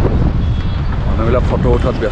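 A man singing a few wavering, drawn-out notes, starting about a second in, over a steady low rumble of wind on the microphone.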